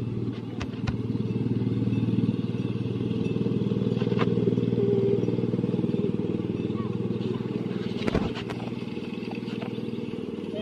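Miniature ride-on railway trains running past on the track: a steady low rumble of wheels on rail, with a few sharp clicks, as a small steam locomotive hauling passenger cars goes by. The rumble eases about eight seconds in.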